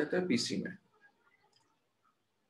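A man's voice for under a second, cut off abruptly, then near silence with a couple of faint ticks.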